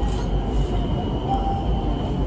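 Bangkok BTS Skytrain train running with a steady rumble, and a brief thin squeal about one and a half seconds in.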